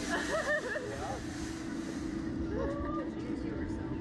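A rider's voice in the first second, then a steady low hum of the Slingshot ride's machinery as the capsule waits to launch, with a brief vocal sound near the three-second mark.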